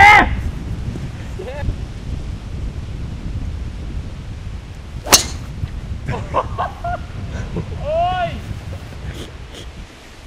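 A golf club striking a teed ball: one sharp crack about five seconds in. Short vocal exclamations at the start and around eight seconds, over a steady rumble of wind on the microphone.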